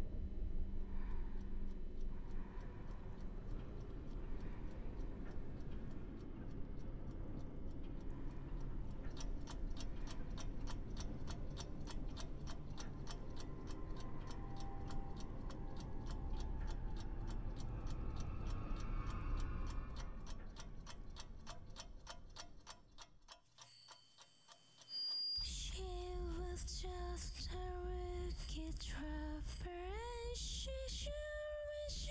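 Film score: a low, dark rumbling drone, joined about a third of the way in by steady clock ticking. The ticking and the drone fade out about three-quarters through, and after a brief hush a melody starts near the end.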